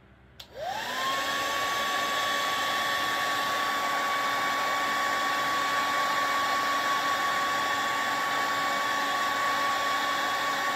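Handheld hair dryer switched on with a click, its motor whine rising quickly to a steady pitch, then running and blowing steadily.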